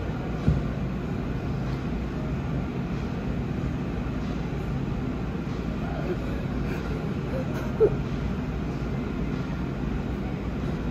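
A metal spatula scraping and rolling frozen ice cream off a stainless steel cold plate, over a steady low machine hum. Two short sharp knocks, one about half a second in and one near eight seconds.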